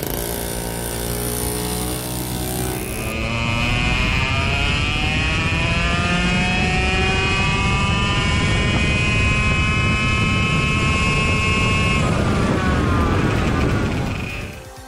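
Single-seater race car's engine heard from onboard, its revs climbing steadily for several seconds under acceleration, then dropping off near the end.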